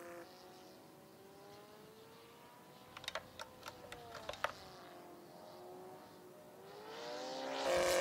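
Radio-controlled model airplane's motor and propeller droning. It fades as the plane flies far off, then grows louder near the end as the plane flies back in. A few sharp clicks come in the middle.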